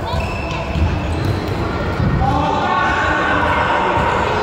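Footballs being kicked and bouncing on a sports-hall floor, echoing in the hall, with children's voices calling out from about two seconds in.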